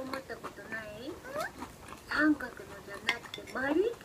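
A voice making speech-like sounds with a gliding pitch but no clear words. A few light clicks of chopsticks against a plate are mixed in.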